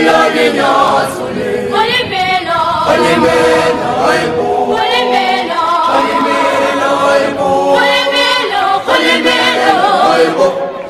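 A choir singing unaccompanied in harmony, in long held phrases a few seconds each.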